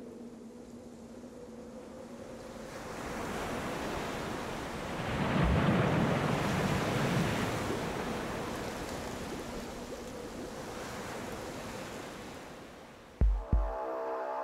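Rushing, churning water swells up, peaks about halfway through and slowly fades away, over a faint steady low hum at the start. Near the end come two short, deep booms.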